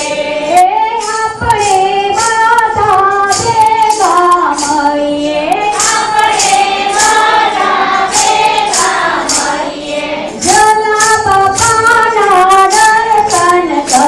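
Hindu devotional bhajan sung by a group of voices, mostly women's, carrying a repeating melody. A steady high percussive beat runs under it at about three strokes a second.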